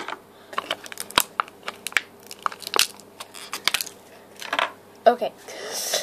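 Clear plastic packaging crinkling and crackling in the hands as a small eraser figure is taken out, an irregular run of short, sharp crackles and clicks.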